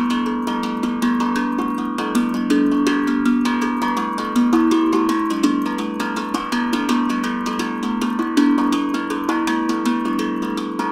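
Stainless steel tongue drum (a Vermont Singing Drum) played with rapid, even hand strikes, several a second, in an improvised flow. Its metal notes ring on and overlap into a continuous wash of pitches that change step by step.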